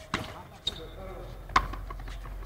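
Frontenis rally: the rubber ball is struck by rackets and hits the fronton wall and floor, three sharp knocks about half a second to a second apart.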